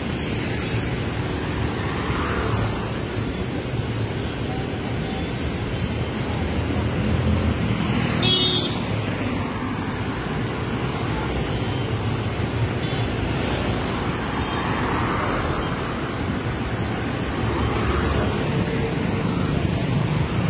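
Road traffic: a steady rumble of cars and motorcycles, swelling and fading as single vehicles pass. A brief sharp sound cuts in about eight seconds in.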